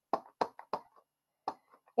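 Whisper White ink pad dabbed onto a cling rubber stamp: light, quick taps, three in the first second and one more about a second and a half in.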